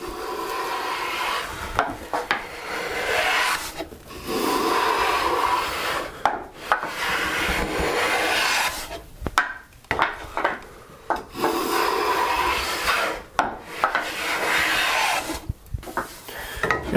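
A Stanley No. 7 jointer plane's iron shaving the edge of a board in about five long strokes of two to three seconds each, with brief knocks between them as the plane is lifted and brought back. The board had a concave edge, so the blade cuts only at the high ends at first; as the hills come down, the shavings lengthen toward one continuous end-to-end cut.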